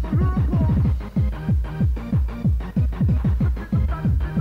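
Fast electronic dance music from a 1990s rave DJ-set tape recording: a steady fast beat of heavy bass hits that each drop in pitch, with synth notes above.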